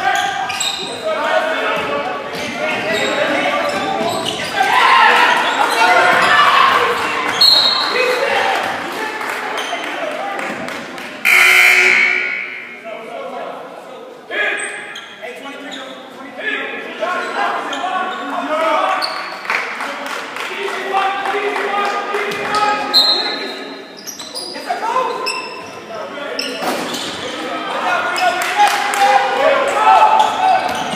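A basketball game echoing in a gymnasium: the ball dribbling on the hardwood floor with sneaker squeaks and crowd chatter running throughout. About eleven seconds in a loud referee's whistle cuts through, fading over about a second.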